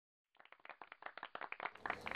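Audience applauding, separate hand claps coming quickly and irregularly. It starts about a third of a second in and grows louder.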